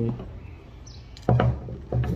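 A sudden knock about a second in, then a smaller one near the end, as a steel suspension coil spring is set down on a cardboard box.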